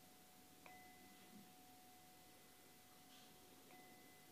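A small bowl bell rings faintly with a clear, sustained two-note tone. It is struck twice, about two-thirds of a second in and again near the end, and each strike renews the ring. It is the signal closing a period of silent meditation.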